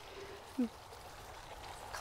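Quiet outdoor background with a faint steady hiss, broken by one brief voice-like sound just over half a second in.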